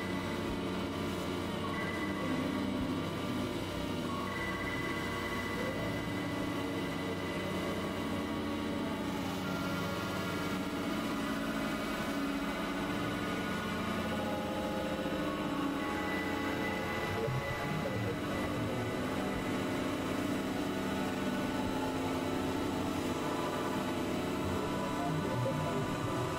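Dense experimental electronic music: many sustained synthesizer tones and drones layered at once, steady in level, with held pitches entering and dropping out.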